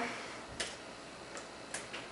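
Four faint, irregularly spaced clicks of plastic hair rollers being handled and pulled out of the hair.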